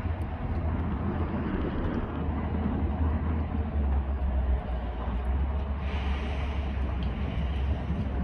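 Steady low rumble of ship engines working across the water, mixed with wind on the microphone; a higher hiss joins about six seconds in and eases off near the end.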